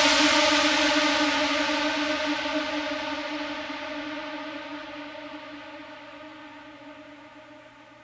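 The closing tail of an electronic techno track: a single held synthesizer note with a wash of hiss, fading out slowly and steadily.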